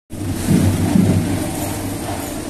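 Street marching band's drums playing, heavy low beats over a steady high hiss.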